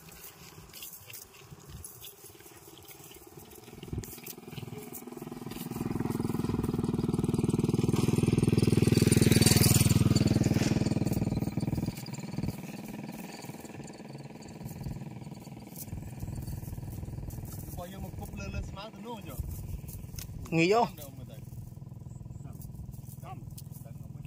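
A motorcycle passing close by: its engine grows steadily louder over several seconds, is loudest about ten seconds in, then drops away quickly.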